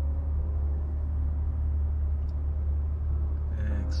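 The 2021 Corvette's 6.2-litre V8 idling in Park, heard from inside the cabin as a steady low rumble.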